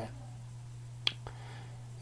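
A pause in speech with a steady low hum and one sharp click about a second in.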